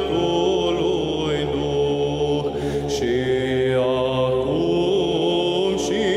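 Chanted vocal music over a steady held drone, the melody gliding slowly between long notes.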